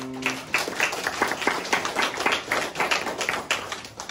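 Audience clapping as the last piano chord dies away; the applause thins out near the end.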